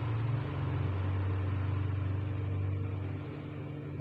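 A low, steady motor-like rumbling hum whose pitch steps down slightly about half a second in, with a faint steady tone above it.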